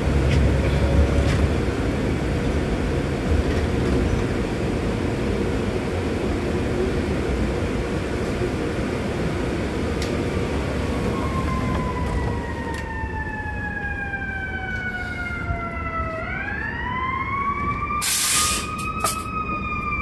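Steady low rumble of the bus running, with a siren coming in about halfway: its wail slides slowly down in pitch, then sweeps back up and holds near the end. A short hiss sounds just before the end.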